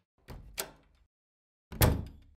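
Two sudden percussive hits, each ringing out briefly, with a silent gap between them. The second, near the end, is the louder.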